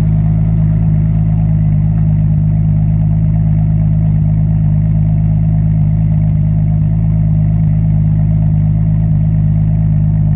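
Toyota Supra's 2JZ-GTE turbocharged inline-six idling steadily, heard close at the exhaust with a deep, even drone.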